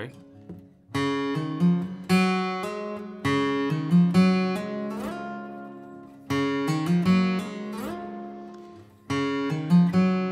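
Steel-string acoustic guitar in double drop D tuning a half step down, picked with a plectrum: a riff over ringing open strings, played three times, with a slide up the neck about five seconds in.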